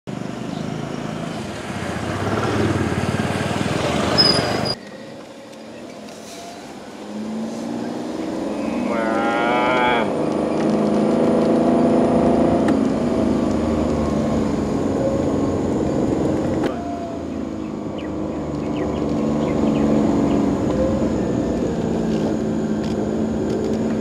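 A vehicle engine running and building up as the vehicle drives along a road, heard from on board. The sound cuts off sharply about five seconds in and comes back more quietly.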